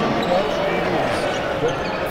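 Steady crowd noise in a basketball arena.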